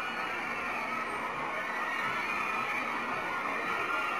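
A large crowd of fans shouting and cheering: a dense, steady din of many high voices.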